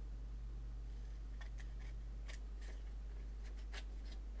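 A few short, crisp clicks and snips of paper and small craft tools being handled, scattered through the middle, over a steady low electrical hum.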